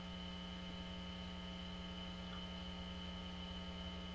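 Steady electrical hum in the recording: a low buzz with a stack of evenly spaced overtones and a thin higher whine over light hiss, holding level throughout.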